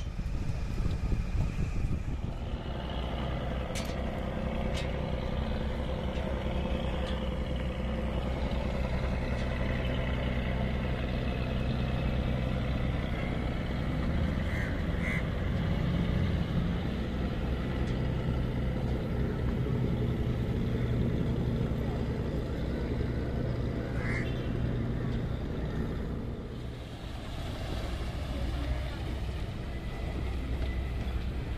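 Motor boat engine running steadily with a low drone, under the wash of water and air noise, as the boat cruises along.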